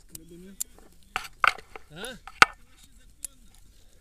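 Several sharp clicks and knocks of paragliding harness gear being handled, the loudest about two and a half seconds in.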